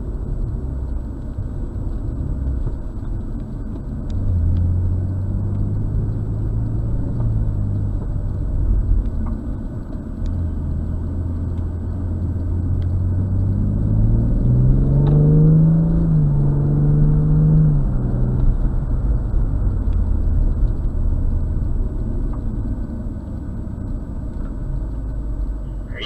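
BMW M240i's turbocharged 3.0-litre inline-six heard from inside the cabin over a steady road rumble, driving a slalom course. The engine note rises and falls with the throttle, climbing to its highest pitch about halfway through and holding for a few seconds before dropping back.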